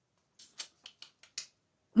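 A printed paper sheet being handled: a quick run of about half a dozen short, crisp crackles and clicks lasting about a second.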